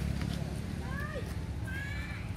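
Young long-tailed macaques squealing during rough play, with two short bursts of high, wavering squeaks, one about a second in and one near the end, over a low background rumble.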